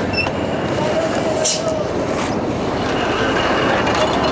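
Motorbike engine running steadily amid roadside traffic noise, with a brief hiss about one and a half seconds in.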